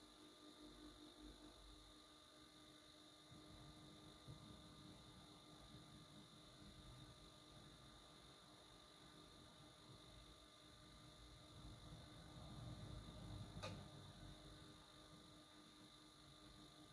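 Near silence: a faint steady hum and hiss from a television playing the blank end of a VHS tape, with one faint brief tick near the end.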